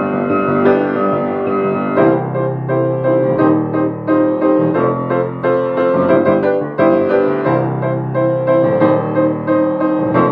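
Hallet Davis HS170 parlor grand piano, a Pearl River-built instrument, played with both hands: chords held in the bass with a melody moving above, the bass re-struck every two to three seconds.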